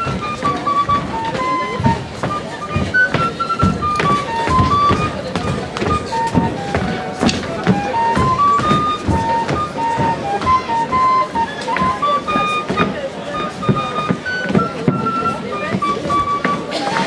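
A lively folk dance tune played as a single melody on a high pipe, with low drum beats underneath.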